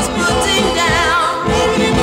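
Late-1950s doo-wop record: a vocal group singing in close harmony over a steady beat, with a wavering high note about a second in.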